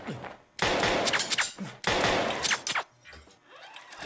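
Action sound effects of blaster gunfire and heavy thuds in two loud bursts, one about half a second in and one about two seconds in, followed by a quieter stretch.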